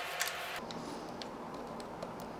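A few faint ticks and clicks as a retaining ring is hand-threaded into a BNVD 1431 night vision pod to secure the image intensifier tube.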